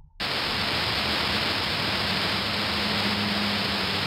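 Steady hiss of recording static with a faint low hum underneath, starting suddenly just after a brief dead silence.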